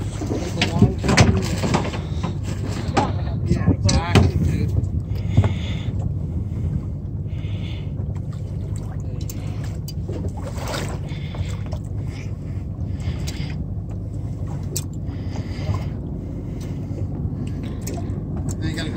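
Boat engine idling with a steady low rumble. Indistinct voices come over it in the first few seconds and again around ten seconds in.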